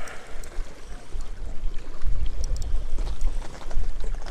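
Wind buffeting the microphone in gusts, a deep rumble over the wash of small waves against jetty rocks.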